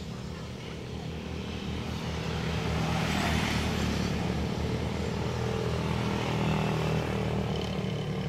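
Road traffic: a steady engine hum with the noise of a vehicle passing, swelling a few seconds in and slowly easing off.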